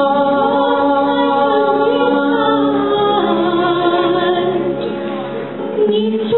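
A man and a woman singing a slow duet into microphones over backing music, with long held notes. The level dips briefly near the end before the next phrase begins.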